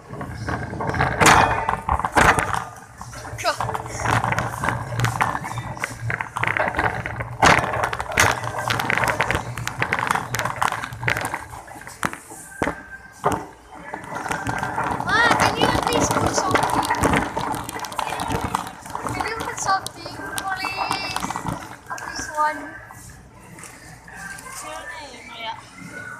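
A wire shopping cart being pushed across a smooth store floor, its wheels rumbling and the basket rattling with sharp clicks. The rolling is steadiest in the first half. Voices and background music run under it.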